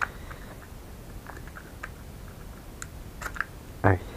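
Light, scattered plastic clicks and taps from a small quadcopter drone and its battery pack being handled.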